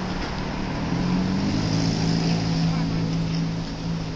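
A motor vehicle engine running steadily at a street intersection, growing louder about a second in and easing off near the end, over the hiss of traffic and wind.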